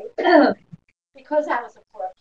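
A woman clearing her throat, with short bits of speech around it.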